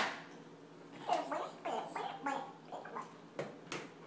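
A baby making a gurgling, warbling babble for about two seconds, the turkey-like 'gobbling' of a toddler, followed by two sharp knocks near the end.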